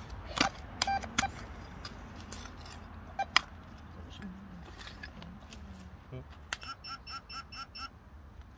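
A hand trowel scrapes and knocks in soil, giving a few sharp clicks, the loudest about three seconds in. From about six and a half seconds, a handheld metal-detecting pinpointer beeps rapidly and evenly, about six beeps a second, signalling metal close by in the soil.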